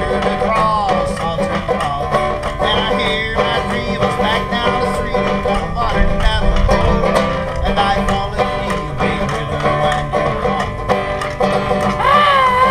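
Instrumental break on banjo, picked in a steady country rhythm, over scraped washboard percussion. A wavering, bending lead line, fitting a rack-held harmonica, plays over the top.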